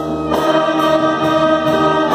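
Wind band of flutes, clarinets, saxophones and brass playing sustained chords of a slow ballad, with a chord change about a third of a second in.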